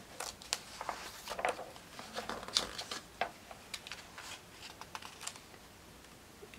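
Light, irregular taps and rustles of paper, as a notebook and paper pattern pieces are handled on a table. They thin out near the end.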